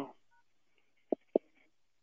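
Cell phone keypad entering a call-in code: a faint touch-tone beep about a third of a second in, then two sharp, short clicks just after a second in.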